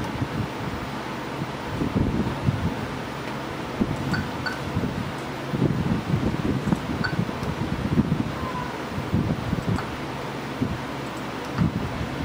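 Uneven low background noise of a machine shop with a CNC mill standing by: no cutting is heard, because the mill's spindle is switched off and the end mill is not turning.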